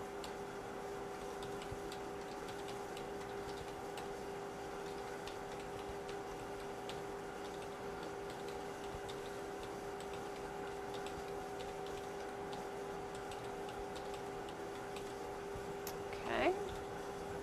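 Faint, irregular computer keyboard and mouse clicks as numbers are typed into a spreadsheet-like table, over a steady electrical hum.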